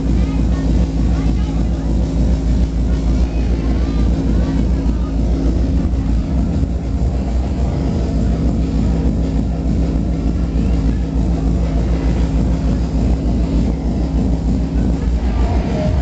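Jungle music played loud through an outdoor rave sound system's speaker stacks, with heavy deep bass running steadily throughout.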